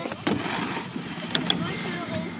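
BMX bike riding on a metal mini ramp: tyres rolling on the steel surface with a sharp knock of the bike hitting the ramp shortly after the start, then two short, high metallic pings a little past halfway.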